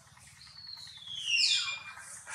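Newborn macaque crying: one high, drawn-out call that falls steadily in pitch and is loudest about halfway through.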